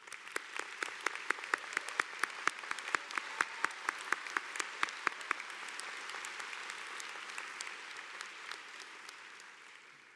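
Audience applauding, with one nearby pair of hands clapping sharply at about four claps a second through the first half. The applause then thins and fades near the end.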